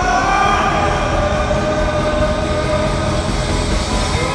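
Live indie rock band playing loudly: a held, fuzzed electric guitar chord slowly sliding down in pitch over bass and drums.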